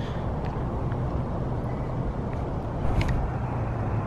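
Steady low rumble of road traffic, with a faint click about three seconds in.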